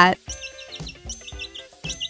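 Soft background music with a run of quick, high chirps: a cartoon bird's tweeting sound effect.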